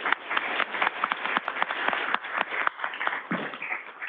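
Audience applauding: many people clapping at once in a steady patter of hand claps. It is heard over a video-call link that cuts off the high end, so the claps sound thin.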